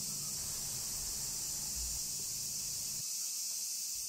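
A steady, high-pitched chorus of insects, with a low background rumble under it that drops away about three seconds in.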